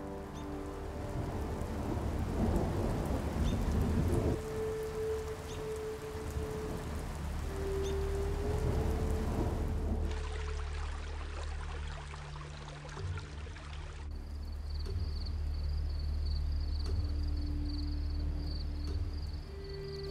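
Thunder rumbling over steady rain, swelling louder twice in the first ten seconds, with the deep rumble carrying on to the end.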